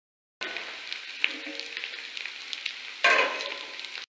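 Hot oil sizzling and crackling in a kadhai as peanuts, green chillies and spices fry in it. It starts abruptly about half a second in, with scattered sharp pops, and surges louder about three seconds in.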